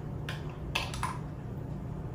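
A metal spoon clinking and scraping against a small porcelain jug as mayonnaise is scooped out: three light clicks in the first second, over a low steady hum.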